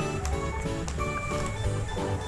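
Background music: an instrumental track with held notes and a steady bass line.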